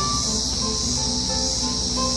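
Cicadas singing in a loud, steady high drone, with a few sparse plucked notes from an oud and pipa duo underneath.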